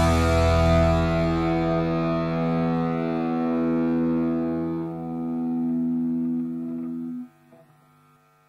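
Final chord on a distorted electric guitar, left ringing and slowly fading at a steady pitch. It cuts off sharply about seven seconds in.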